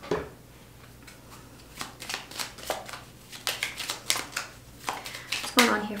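A deck of tarot cards being shuffled by hand: a string of quick, irregular card clicks and slaps, starting about two seconds in.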